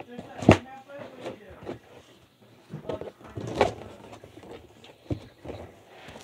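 Cardboard hoverboard box being handled and opened: scattered knocks, scrapes and rustles, with a loud knock about half a second in and others around the middle and near the end.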